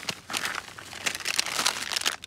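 Thin plastic bags and a snack wrapper crinkling as a hand rummages through them, a dense run of crackles.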